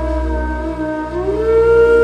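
Slow, calm instrumental music: a sustained melody tone over a low steady drone, sliding up in pitch a little past a second in and then holding the new note.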